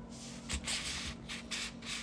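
A few short scraping, rustling handling noises starting about half a second in, over a faint steady hum.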